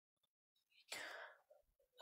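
Near silence, with one faint breath about a second in.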